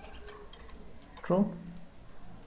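Faint clicking of computer keyboard keys as a word is typed, with a man's voice saying "true" about a second in, over a low steady hum.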